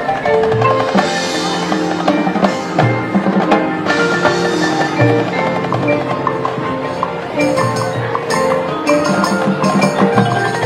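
Marching band playing its halftime show music, sustained wind and brass notes over a rhythmic pulse, with the front ensemble's mallet percussion such as marimba and glockenspiel.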